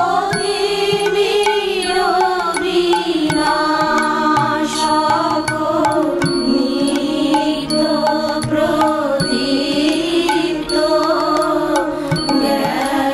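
Bengali devotional hymn sung as a slow, chant-like melody over steady instrumental accompaniment.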